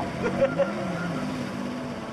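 Mud truck engine running and revving up, then easing back down, as a low tone that rises and falls about a second in.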